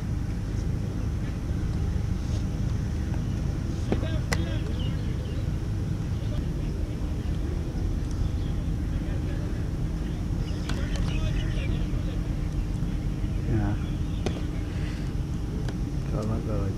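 Cricket net practice: several sharp cracks of a bat hitting a leather ball, the loudest about four seconds in, over a steady low rumble and distant voices.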